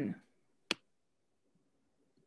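A woman's voice trailing off at the end of a spoken name, then a single sharp click about two-thirds of a second in, followed by near silence.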